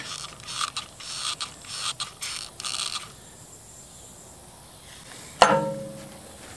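Irregular small metallic clicks and rattles of hand tools being worked at a bulldozer bucket's pin boss for about three seconds, then one sharp metallic clink that rings briefly near the end.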